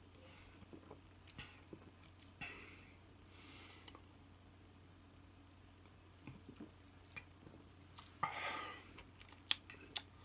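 A man drinking soda from a glass bottle: faint swallowing and wet mouth sounds with small clicks. A louder breathy rush comes near the end, followed by a couple of sharp clicks.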